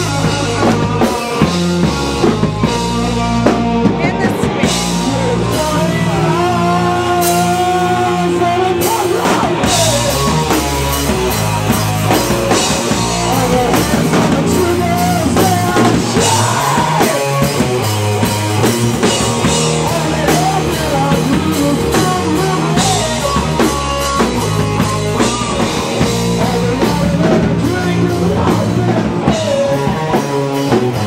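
Live rock band playing loud and steady: drum kit with electric guitar.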